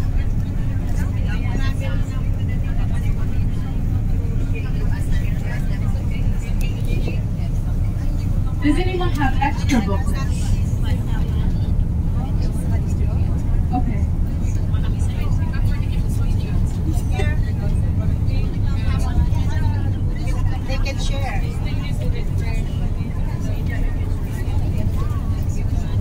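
Steady low rumble of a moving coach bus, engine and road noise heard from inside the passenger cabin, with a steady hum that stops about seven seconds in. Faint talk among passengers comes and goes over it.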